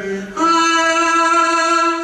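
A solo voice singing long, held melodic notes. The voice breaks off just after the start, then takes up a new, higher note about a third of a second in and holds it until shortly before the end.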